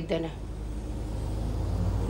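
Low rumble of a vehicle, growing louder toward the end, after the tail of a spoken word at the start.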